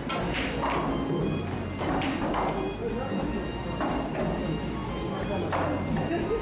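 Background music over a pool shot: a sharp click of the cue tip striking the cue ball right at the start, followed by a few more short clicks and knocks of balls meeting each other and the cushions.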